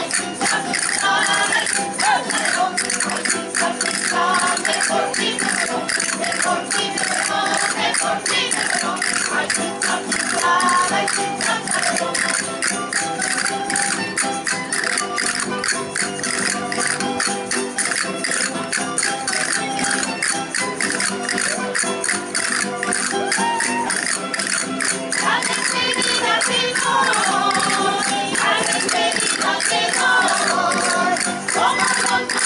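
Traditional Spanish folk dance music accompanying dancers, driven by a fast, dense rattling-clicking percussion beat. A singing voice comes in near the end.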